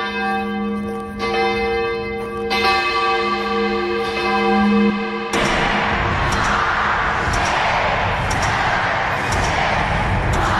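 A deep bell tolling, struck about every second and a half and ringing on between strikes. About five seconds in it cuts off sharply into a dense rushing noise with faint high ticks.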